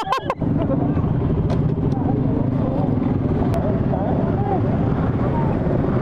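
Motorcycle engine idling steadily close to the microphone, a low even rumble, with faint voices of other people in the background.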